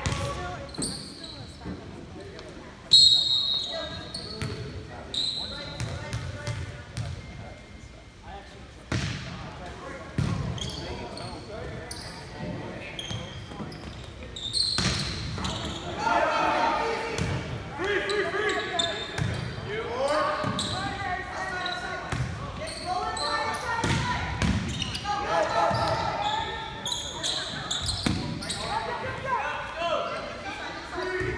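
Volleyball play in a school gym: the ball is struck and bounces off the floor in sharp smacks, the loudest about three seconds in, echoing in the large hall. Players and spectators call out and talk, more from the middle on.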